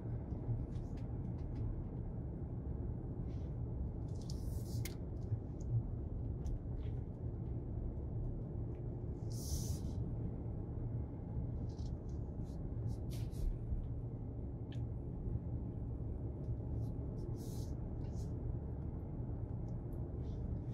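Steady low rumble of a car's engine and tyres heard inside the cabin while driving slowly, with a few brief hisses and faint clicks along the way.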